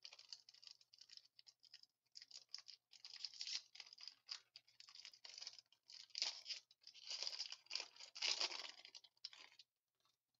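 Foil wrapper of a 2015 Topps Triple Threads football card pack being torn open and crinkled by hand, a run of crackly rustles, loudest in the last few seconds as the pack is pulled apart, stopping just before the end.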